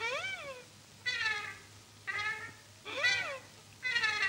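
A string of meows, about one a second, each call rising and then falling in pitch.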